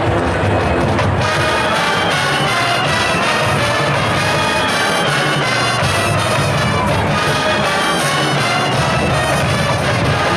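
Marching band playing a jazz number, its brass section of trumpets and trombones to the fore, with the brass coming in strongly about a second in.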